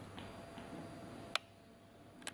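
Faint room hiss broken by one short, sharp click a little over a second in.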